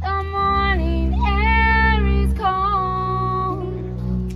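Small acoustic jazz band playing: upright bass and piano hold low notes under a melody of long, slightly bending held notes.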